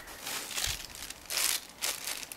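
Dry sphagnum moss rustling as a hand pushes a plant label into it and presses it down on top of a pot, in three short bursts.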